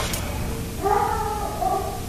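A single animal-like cry about a second long, starting just under a second in, over a faint steady tone.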